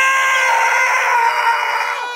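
A man's long, excited yell of "yeah", held at one high pitch and breaking off near the end.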